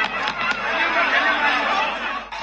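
Speech: a man talking continuously, with no other sound standing out.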